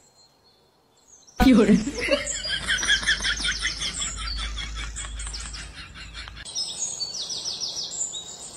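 Birds chirping in quick, repeated calls, starting suddenly after a second and a half of near silence, with a low hum under them until well past the middle.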